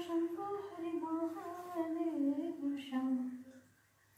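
A woman's voice singing a slow devotional melody without words, humming-like, with no instruments heard. It holds long notes that drift downward and fades out about three and a half seconds in.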